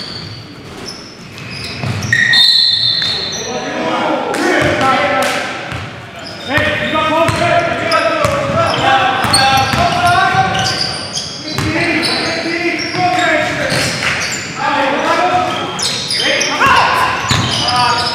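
Basketball game sounds in a gymnasium: the ball bouncing on the hardwood court with sharp knocks, and players' voices calling out indistinctly. All of it echoes in the large hall.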